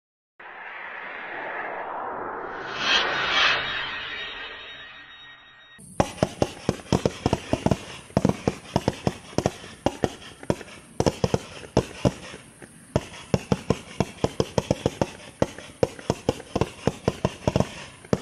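A whooshing swell that rises and falls over the first few seconds. Then, from about six seconds in, a 500 g consumer fireworks cake fires a rapid, uneven series of sharp reports, several a second, with short gaps.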